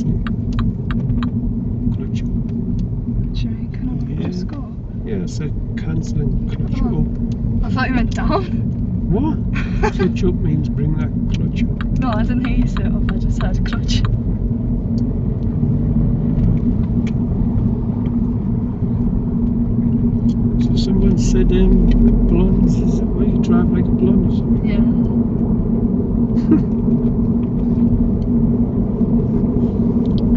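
Car engine and road noise heard from inside the cabin as the car is driven on after a roundabout, a steady drone that grows slightly louder partway through as it picks up speed.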